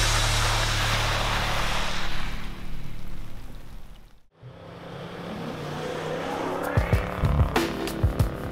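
A four-wheel-drive ute driving through a deep puddle on a sandy track, water spraying around the wheels over its running engine. The sound fades out about four seconds in; then another vehicle's engine grows louder, with knocks near the end.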